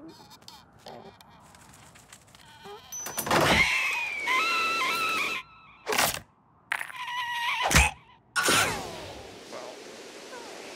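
Cartoon slapstick sound effects: a few sharp hits and thuds mixed with a cartoon ostrich's wavering, squawking cries, the last one sliding down in pitch.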